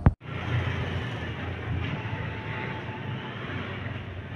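A sharp click, then a steady background noise with no clear tones.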